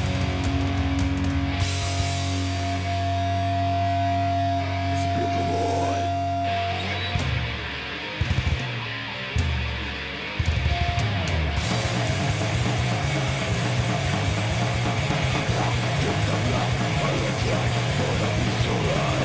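Heavy metal band playing live on distorted electric guitars and bass. A held chord rings for the first several seconds, drops to a short lull with a few sharp hits about eight seconds in, and the full band comes back in about ten seconds in.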